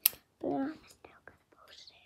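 A sharp click right at the start, then a short voiced sound and soft whispering with a couple of small clicks.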